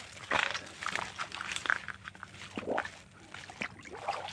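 Footsteps through wet grass and undergrowth at the edge of shallow muddy water: irregular rustling, swishing and squelching, several strokes a second.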